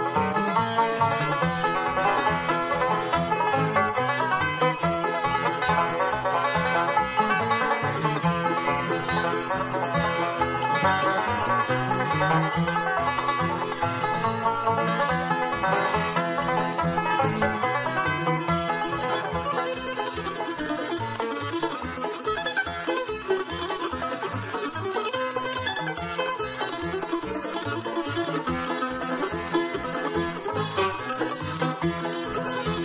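Bluegrass band playing an instrumental live: mandolin, fiddle, five-string banjo, acoustic guitar and upright bass, with the bass marking a steady, even beat.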